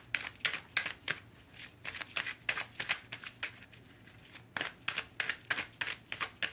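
A deck of tarot cards being shuffled by hand: a quick run of sharp papery snaps, about four a second, easing off briefly in the middle.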